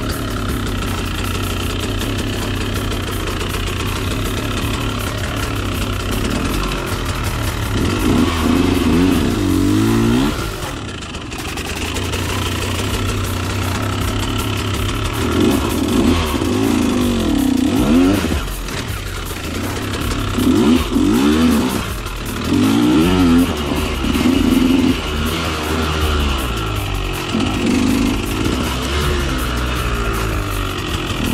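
2013 KTM 125 SX single-cylinder two-stroke dirt bike engine revving hard under riding load, the pitch rising and falling with each burst of throttle. The throttle eases off briefly near the end of the first third, then about six more rising-and-falling revs follow.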